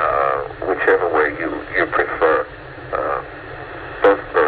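Speech over a telephone line: a person talking, the voice thin and narrow as through a phone, with a low steady hum beneath.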